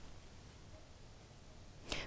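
Near silence between two stretches of speech: a faint, even hiss, with a woman's voice starting again near the end.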